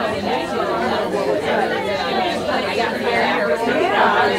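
Many people talking at once: overlapping conversations from several groups, with no break.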